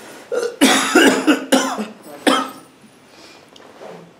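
A man coughing close to the microphone: a quick run of about five coughs in under two seconds, with one last cough about two and a half seconds in.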